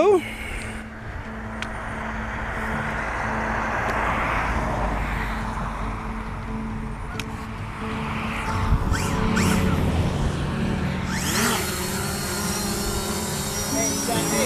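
Fimi X8 SE 2020 quadcopter's motors spinning up with a rising whine about eleven seconds in as it lifts off on auto take-off. Its propellers then run with a steady high buzz, over a low rumble.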